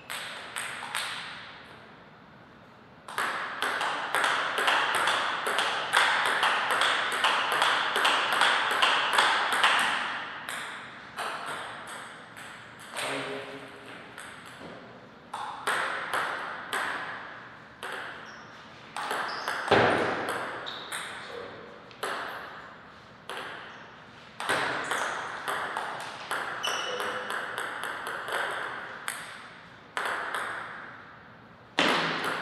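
Table tennis ball ticking off paddles and table in quick rallies of hits and bounces, with one louder thump about two-thirds of the way in.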